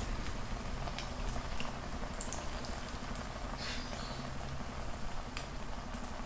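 Potato pinwheels deep-frying in a pan of hot oil: a soft, steady sizzle with scattered small pops and crackles.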